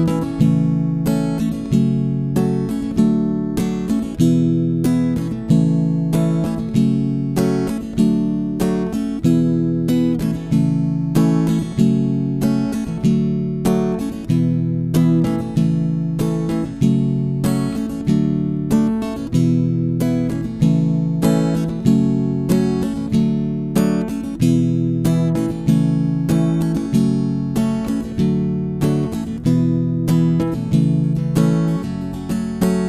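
Steel-string acoustic guitar strummed steadily in a repeating down-down-down-up pattern, working through the verse chords G, Em, C and D.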